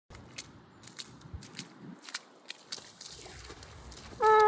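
Faint, irregular footsteps crunching on frozen, snowy ground, a few sharp steps a second over a low hiss.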